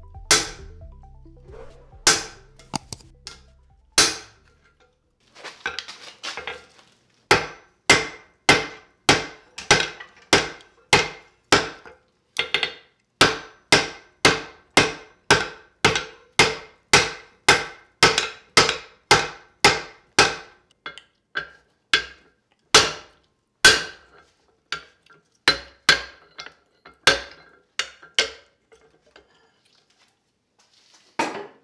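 Hand hammer striking red-hot steel on an anvil while forging a tomahawk head, and each blow rings. A few spaced blows come first, then a steady run of about one and a half strikes a second that stops shortly before the end.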